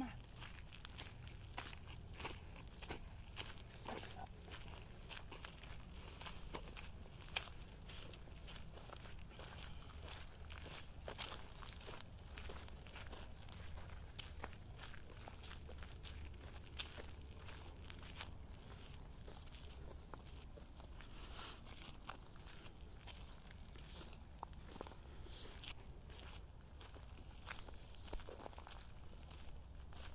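Faint, irregular footsteps and light crunching on dry ground and grass, over a steady low rumble.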